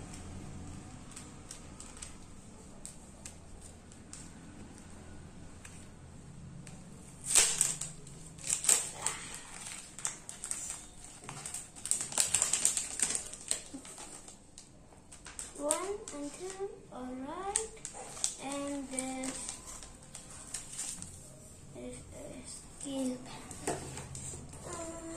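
Rapid clicks and rustling of small plastic and paper kit parts being handled, loudest in a run about a third of the way in. Indistinct voices follow later in the background.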